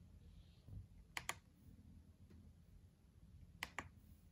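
Two quick double clicks from the push buttons of an EPH RDTP programmable thermostat being pressed, one about a second in and the other near the end.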